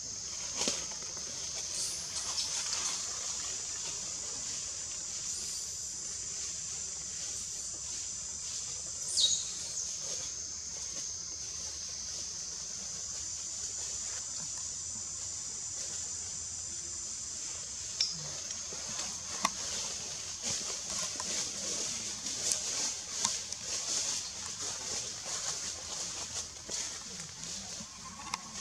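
A steady high-pitched drone, typical of cicadas in tropical forest, fills the background. A few brief high squeals cut through it, the loudest about nine seconds in. From about eighteen seconds on there are scattered sharp clicks and rustles.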